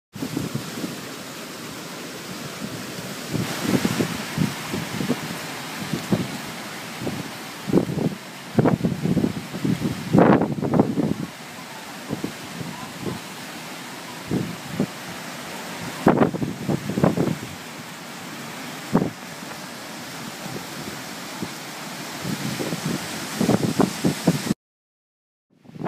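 Typhoon winds blowing hard, with gusts buffeting the microphone in irregular low surges every second or so, the strongest about a third and two-thirds of the way through, over a constant rush of wind through trees.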